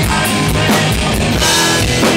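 Live punk rock band playing loud: distorted electric guitar and a driving drum kit with steady cymbal hits about four a second, under a male singer's vocals into the microphone.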